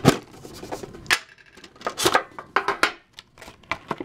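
Clear plastic wrapping crinkling and rustling as it is handled, with the tin being moved: about half a dozen short, sharp rustles and scrapes spread over a few seconds.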